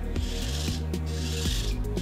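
Anki Cozmo toy robot's small tread motors whirring in two short bursts about a second apart as it drives forward step by step under a programmed repeat, over background music.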